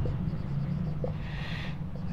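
Marker pen writing on a whiteboard, with a few light taps and a short scratchy stroke about one and a half seconds in, over a steady low hum.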